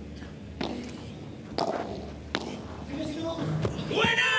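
Padel rally: four sharp hits of the ball off rackets and the court's walls, roughly a second apart, with short voice sounds from the court between them.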